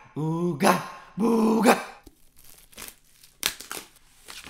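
A man's wordless voice sounds twice in the first two seconds, each call holding a low pitch and then rising. This is followed by rustling and a few sharp clicks from a small whiteboard being handled.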